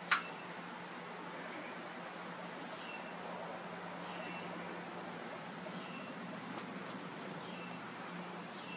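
Steady outdoor background of low hum and hiss, with a faint short high chirp about every one and a half seconds and a sharp click right at the start.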